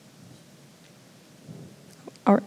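Faint room tone: a steady low hiss, with a slight soft rise in the low sounds about one and a half seconds in.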